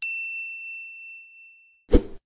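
Notification-bell ding from a subscribe-button animation: one bright chime that rings out and fades over nearly two seconds. A short thump follows near the end.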